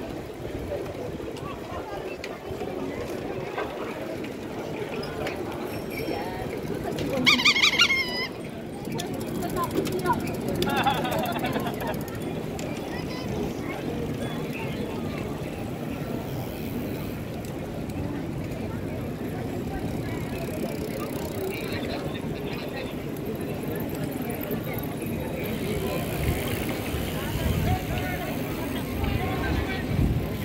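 Street ambience of people talking as bicycles ride past, with a brief loud high-pitched sound about seven seconds in.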